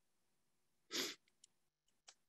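A person's single short, breathy burst about a second in, with a faint click after it.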